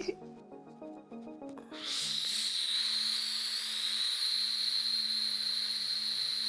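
A few quiet music notes, then about two seconds in a steady hiss begins: nitrous oxide gas escaping from an aerosol whipped-topping can held to the mouth, running evenly with a faint low tone under it.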